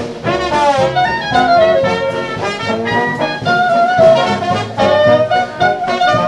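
Traditional jazz band playing live, the trombone prominent with trumpet and clarinet over a rhythm section with drums. Melody lines slide and weave, with a few downward slurs about a second in.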